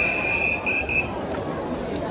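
A whistle blown in one long, high, steady note that breaks briefly and stops about a second in, over the babble of a large crowd.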